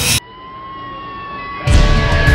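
Soundtrack sound design: a swelling whoosh cuts off suddenly, then a muffled, steady high tone that slowly bends in pitch, like a far-off siren, before a loud hit brings in the music near the end.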